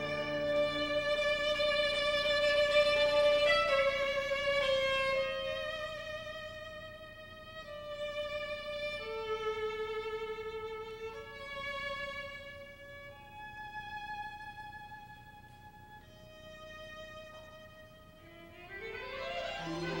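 Solo violin playing a slow line of long held notes, mostly one at a time, growing softer through the middle of the passage. Near the end a quick rising run swells louder.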